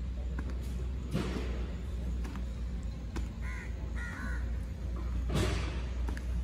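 A bird cawing, a few short harsh calls in quick succession about three and a half seconds in, between two louder brief rushes of noise about a second in and near the end.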